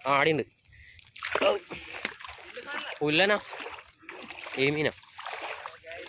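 Water splashing and sloshing as people wade through a pond and work a fishing net, with short voices calling out several times over it.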